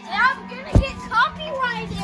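Children squealing and calling out in play, high voices that swoop up and down several times, with a sharp thump just under a second in.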